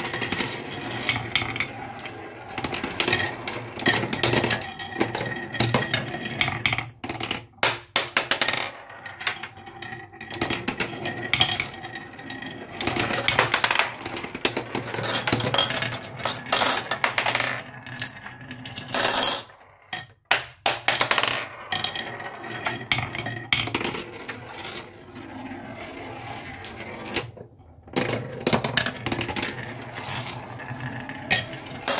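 Glass marbles rolling and clattering down a wooden marble run: a rolling rumble full of quick clicks and clinks as they knock along the wooden tracks and against each other, with a few brief lulls.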